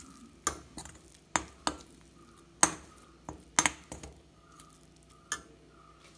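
Metal spoon scraping and knocking against a steel kadai while thick paste is scooped out: a string of sharp, irregular clinks and scrapes, the loudest about two and a half and three and a half seconds in.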